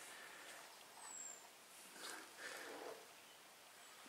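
Near silence: faint outdoor ambience, with a brief faint high chirp about a second in and soft faint rustles around two to three seconds.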